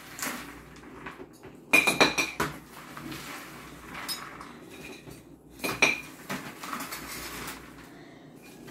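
Metal spoons and forks scraping and clinking against a ceramic platter and bowls as popcorn is scooped. There are two busier runs of ringing clinks, about two seconds in and again near six seconds.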